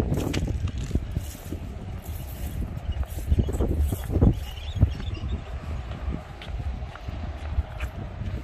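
Wind buffeting the microphone with a steady low rumble, over irregular footsteps on railway track ballast, heaviest about halfway through.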